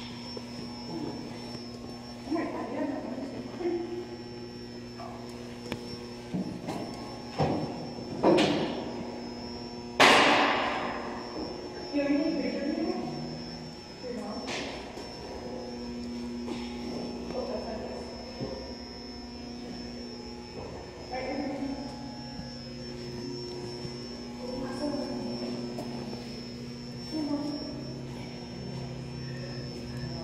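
Indistinct voices over a steady electrical hum, with two sharp thumps about eight and ten seconds in, the second the loudest.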